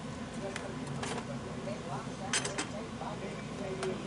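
A few light clicks and clinks as a kitchen knife and a cooked ear of corn are handled against a dish, the loudest a quick cluster of clicks about halfway through.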